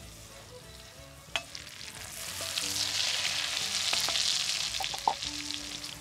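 Flour-dredged rump roast sizzling in hot butter in a cast-iron Dutch oven over campfire coals: a browning sear. The sizzle swells about two seconds in and eases slightly toward the end.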